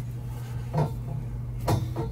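Hand-threading a McDonnell & Miller GuardDog RB-24 low water cutoff into a brass fitting: two brief scraping clicks of the threads, about a second in and near the end, over a steady low hum.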